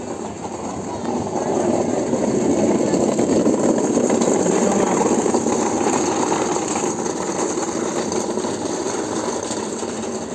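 Platform hand trolley rattling as it is pushed over the pavement, a fast continuous clatter that grows louder a second or two in, with voices of a crowd.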